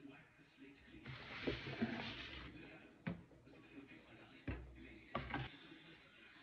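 Soft handling noises at a kitchen counter: a rustle about a second in, then a few light knocks later on as a bowl and cookie dough are handled.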